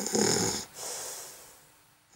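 Cartoon snoring sound effect: a loud rasping inhale snore that stops about half a second in, then a fainter hissing exhale that fades away.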